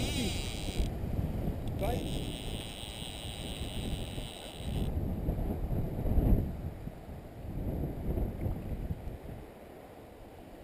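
Wind buffeting the microphone on a riverbank, rising and falling, over the flow of the river. Twice in the first five seconds a steady high whirr starts and stops suddenly, the second time for about three seconds.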